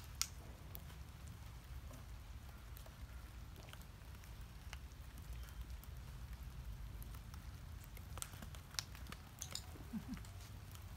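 Faint outdoor background: a steady low rumble with scattered short sharp ticks, a few more of them near the end.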